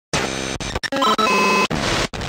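A rapid jumble of short sound effects for an animated logo intro: noisy bursts, then a run of bright beeping tones about a second in. Each piece is cut off abruptly.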